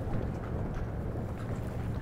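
Steady low rumble of outdoor ambience, heaviest in the bass, with no distinct event standing out.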